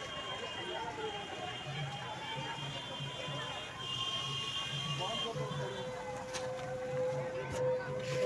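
Voices over a slowly wavering, whistle-like tone, with a soft steady beat underneath and a second held tone joining in after about five seconds.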